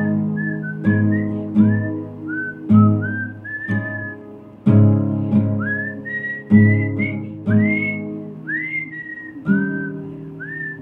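A woman whistling a melody over plucked acoustic guitar chords. Most whistled notes slide up into pitch and then hold.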